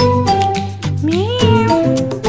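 A domestic cat meowing once, a single rising call of about half a second starting about a second in, over background music.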